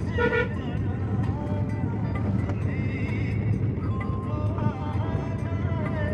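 Steady low rumble of a car driving on a rough road, heard from inside the cabin, with faint music over it.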